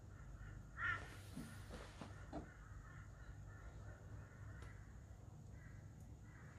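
A single short, harsh bird call, like a crow's caw, about a second in, over a faint steady outdoor background.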